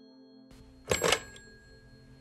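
Handset of a rotary-dial desk telephone picked up off its cradle about a second in: a short double clatter of the handset and hook switch with a brief bell ding that rings out, over soft music.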